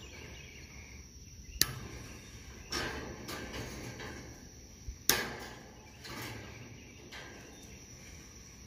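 Steel fencing wire being snipped and worked with pliers-type cutters: a few sharp metallic clicks, the loudest about five seconds in, over steady insect chirping in the background.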